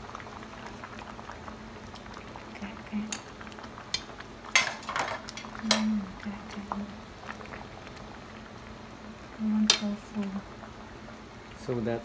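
Electric hotpot with two soups at a rolling boil, bubbling steadily, with a few sharp clinks of utensils against the stainless steel pot, the loudest about four and a half seconds in and another near ten seconds.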